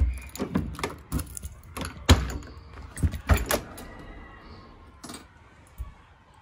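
Clicks, knocks and rattles as the door of a 1971 VW Beetle is opened by its push-button handle, the loudest knock about two seconds in, then quieter handling sounds.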